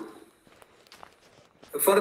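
A man's lecturing voice trails off, then there is a pause of near silence with a couple of faint clicks. He starts speaking again near the end.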